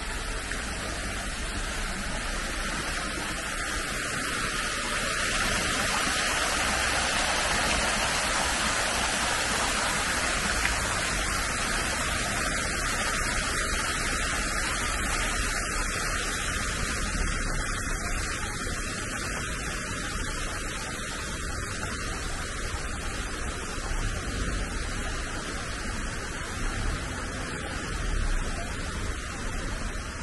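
Steady rushing of water cascading down a stone water-wall fountain into its pool, with rain falling around it. It is a little louder over the first half and eases off in the last third.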